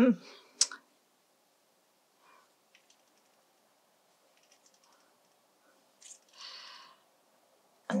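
Quiet room with faint clicks and small taps of a watercolour brush working paint on a ceramic mixing plate, with one sharper click just after the start. A soft breath comes near the end.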